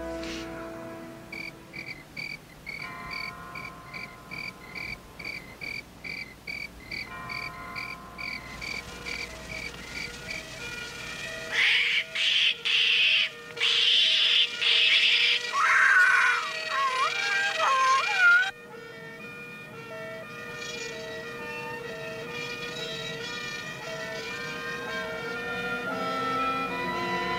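Blue-and-gold macaw screeching in a string of loud, harsh calls for several seconds in the middle, after steady night chirping of about two chirps a second. Soft film score music plays underneath and takes over near the end.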